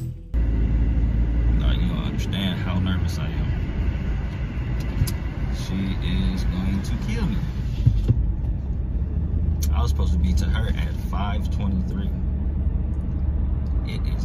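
Steady low rumble of road and engine noise inside the cabin of a moving car.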